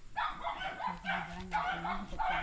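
A dog barking in a rapid run of short, sharp barks, about three a second.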